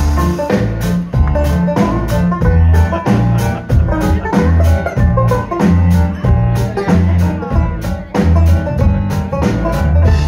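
Live band playing an upbeat instrumental passage: banjo over a steady, heavy bass-drum beat and drum kit. The music starts abruptly at the very beginning.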